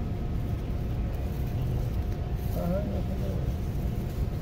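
Open-air crowd ambience: a steady low rumble with a faint voice murmuring briefly about two and a half seconds in.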